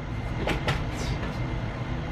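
Dry-erase marker writing on a whiteboard, with a few short scratchy strokes over a steady low background rumble.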